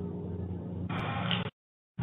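Steady low electrical hum and hiss on an open conference-call microphone line. About a second in comes a louder rush of noise with a sharp click. Then the audio cuts out completely for about half a second, a gate or dropout on the call line.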